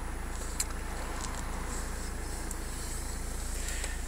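A Rover 75 CDTi's four-cylinder turbodiesel idling, heard inside the cabin as a steady low hum, with one faint click about half a second in.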